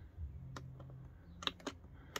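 Plastic rotary push-knob of a Truma iNet control panel clicking under a thumb: one click about half a second in, then two close together near the end.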